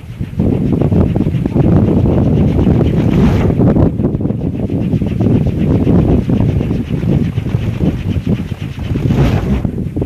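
Kolecer, a Sundanese wooden wind propeller on a tall bamboo pole, whirring steadily with a rapid flutter as it spins in the wind, mixed with wind buffeting the microphone.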